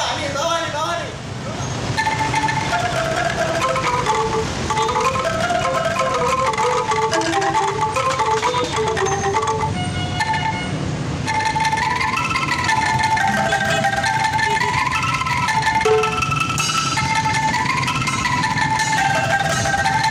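Bamboo ensemble of angklung and bamboo xylophone playing a stepping melody of clear struck notes, which starts about two seconds in.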